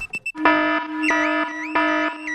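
Cartoon car alarm going off: after a few short clicks, a loud electronic alarm starts about a third of a second in, a steady low tone under a rising whoop that repeats about every half second.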